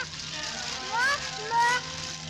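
A cartoon baby's voice crying out twice in rising wails, about a second in and again near the end, over background music.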